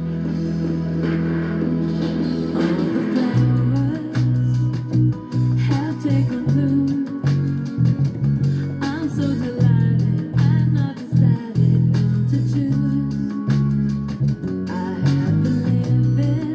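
Electronic dance-pop track with an electric bass line played on a Fender Jazz Bass with flatwound strings: a long held low note, then from about three seconds in a choppy, rhythmic run of short notes.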